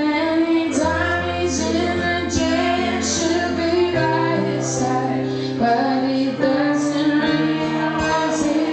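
Live band music: a woman singing over held keyboard chords, with cymbal splashes every second or so.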